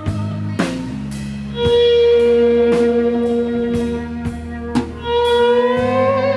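Live band playing an instrumental passage: an electric guitar holds long sustained lead notes with vibrato and bends up near the end, over a drum kit's snare and cymbal hits and a low bowed electric upright bass line.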